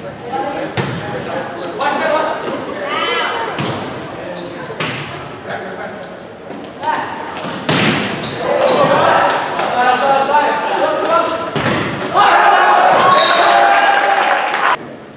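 Volleyball rally in a gymnasium: sharp hits of the ball, brief sneaker squeaks on the court floor and players calling out. Shouting and cheering grow louder in the last few seconds as the point ends.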